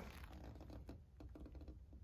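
Faint light clicks and scrapes of a black plastic seedling tray being gripped at its edge and lifted.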